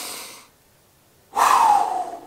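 A man breathing deeply to get his breath back: a breath in through the nose fading out about half a second in, a short pause, then a louder breath out through the mouth that falls in pitch.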